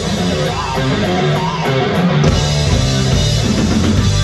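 Live rock band playing loud and without a break: electric guitars and bass over a drum kit.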